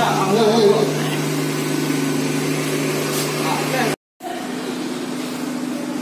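Indistinct voices over a steady low mechanical hum. The sound cuts out completely for a moment about four seconds in, then the hum carries on slightly quieter.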